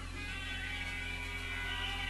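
A quiet breakdown in a drum and bass mix: the beat has dropped out, leaving a low steady hum with faint held tones above it.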